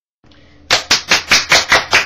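Hands clapping in quick, even applause, about five claps a second, starting under a second in after a moment of dead silence.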